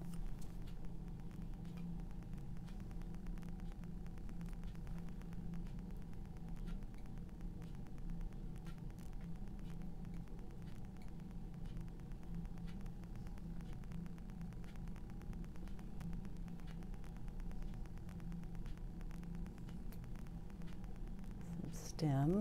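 Steady low hum of room tone, with faint, scattered small ticks and scrapes from painting tools being handled.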